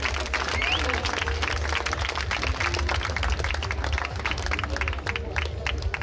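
Spectators clapping and applauding, with scattered voices from the crowd and a steady low rumble underneath.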